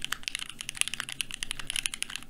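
Fast touch-typing on a Keychron Q2 mechanical keyboard, freshly fitted with NK Silk Olivia switches and GMK keycaps: a rapid, uneven stream of key clacks, several strokes a second.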